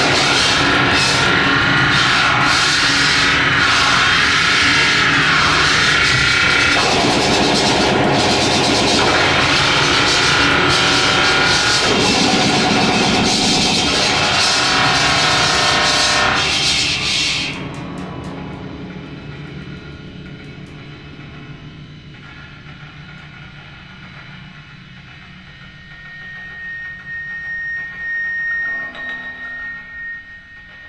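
Live free-improvised noise music with electronics: a loud, dense, harsh wall of sound with wavering pitched layers. About two-thirds of the way through it cuts off abruptly, leaving a much quieter, sparse texture in which a thin steady high tone sounds near the end.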